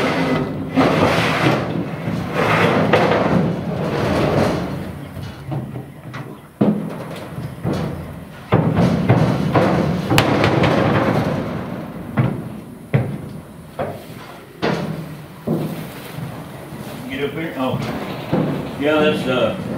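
Metal clattering and boot steps inside a cattle trailer as its diamond-plate metal loading ramp is shifted into place and walked up, with several sharp metal bangs in the middle.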